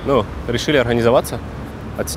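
A man's voice speaking, with a steady low rumble of road traffic behind it.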